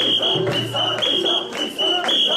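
Festival crowd of mikoshi bearers chanting together, with a shrill whistle blown in repeated short blasts to keep the carrying rhythm.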